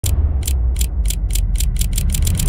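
Intro soundtrack: a run of sharp, high ticks like a ratchet or clock that start about two a second and keep speeding up, over a steady low bass drone.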